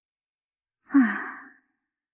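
A short breathy sigh in a female voice, about a second in, falling in pitch as it fades.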